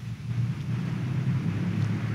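A church congregation rising to its feet: a low, steady rumble of shuffling, pews and movement that swells as the people stand.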